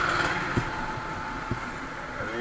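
Motorcycle riding slowly, its engine running under road and wind noise at the bike's camera, easing off a little, with two light knocks.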